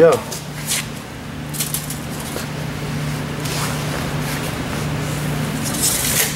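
Steady low hum of shop machinery, with a few brief rustling scrapes as a tape measure is handled across the snowmobile skis.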